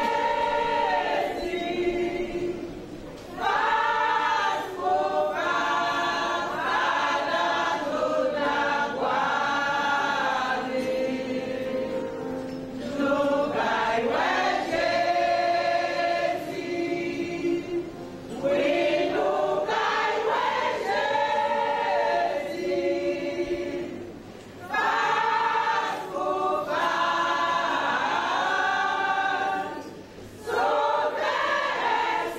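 Church choir of mostly women's voices singing a gospel song, in long phrases with brief breaks between them.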